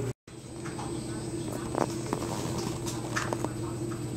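A cat batting a small toy ball around a tile floor: a few scattered light taps of paws and ball, over a steady low hum.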